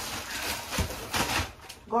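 Plastic shopping bag rustling and crinkling as groceries are taken out of it, with a few light knocks from items being handled.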